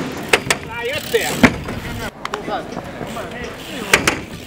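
A BMX bike rolling on a skatepark surface, with a few sharp knocks and clacks scattered through and short bursts of voices calling out.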